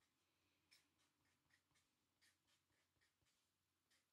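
Near silence with a handful of short, faint strokes of a felt-tip marker writing letters on paper.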